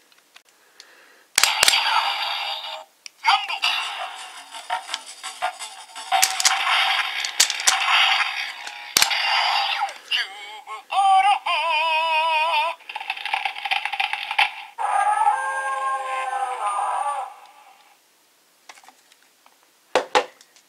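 Electronic sound effects and music from a handheld battery-powered toy device, set off by sharp clicks of its buttons. They include a fast-warbling synthesized tone about 11 seconds in and a sung or called electronic phrase near the end, which stops a couple of seconds before the next speech.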